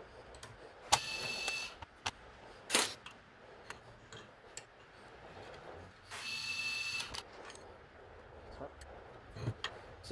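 A small electric motor whirring with a steady high whine in two short bursts, about a second in and again about six seconds in. Light sharp clicks of metal tools on the welding positioner come between them.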